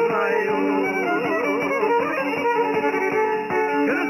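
Serbian traditional folk music: a violin playing a melody with wide vibrato over plucked and strummed string accompaniment.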